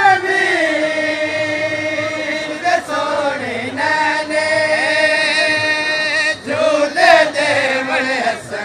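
A man chanting a devotional verse in long held notes. The pitch sags and recovers about halfway through, and a new phrase begins near the end.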